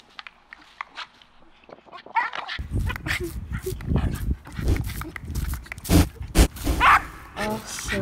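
A small dog barking and whining outdoors, with a low rumble underneath. It starts suddenly about two and a half seconds in, after near-quiet.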